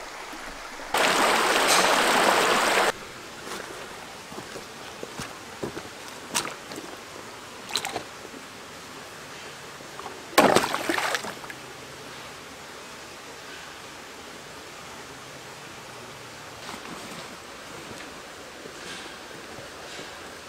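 Creek water running steadily. About a second in comes a loud rush of noise lasting two seconds, and about halfway through a splash as a plastic-bottle minnow trap is dipped into the creek. A few scattered clicks fall in between.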